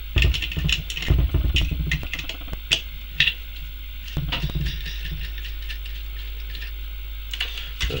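Nut on a rear-casing stud of a Lucas A127 alternator being undone with a hand tool: irregular metallic clicks and clinks of the tool on the nut, thinning out after about four seconds, over a steady low hum.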